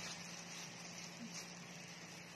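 Faint room tone: a steady hiss with a low, even hum underneath.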